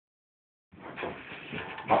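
A small dog rubbing and scrabbling itself along a rug to dry off after a bath, making short dog noises as it goes. The sound starts under a second in, with a louder burst near the end.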